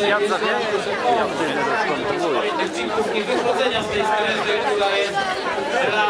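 Several people talking at once close by: overlapping chatter of voices, no single speaker clear.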